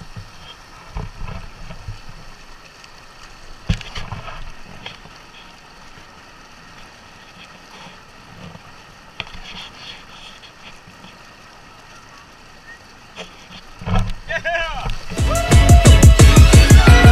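Steady rush of water running down a fibreglass water slide, with faint voices in the background. Near the end a loud electronic dance track with a heavy beat cuts in.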